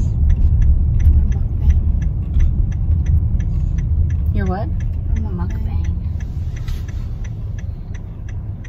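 Car cabin road and engine rumble, with a turn-signal indicator ticking steadily at about three ticks a second. A brief voice sound comes about halfway through.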